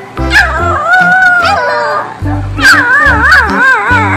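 Background music with a steady bass beat, with a puppy's high, wavering whimpers over it, twice.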